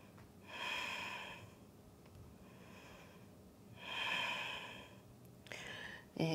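A woman taking slow, deep, audible breaths while holding a yoga pose: two long breaths about three seconds apart, with a shorter breath near the end.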